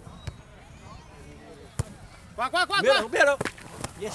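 Two sharp slaps of hands striking a volleyball, a light one just after the start and a louder one near the middle, followed by players shouting loudly during the second half.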